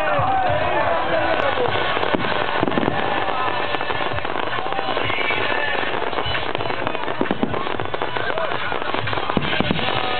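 Aerial fireworks display: continuous crackling and popping from bursting shells, with a few louder bangs.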